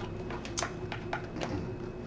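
Tarot cards being shuffled and handled: a scatter of soft, irregular card snaps and clicks over a faint steady hum.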